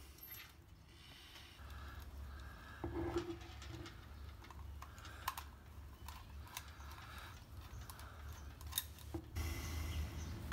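Faint, irregular small metal clicks and light taps as brass screws, a hold-down clip and a screwdriver are handled against a car distributor housing while fitting its base plate.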